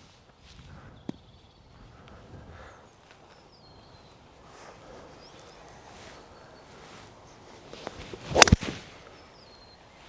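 Golf swing with a seven wood: a short swish of the club, then one crisp strike of the clubhead on the ball near the end.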